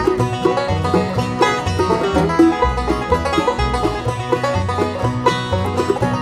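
Bluegrass band playing an instrumental passage: quick banjo picking over strummed acoustic guitars, mandolin and an upright bass walking on the beat.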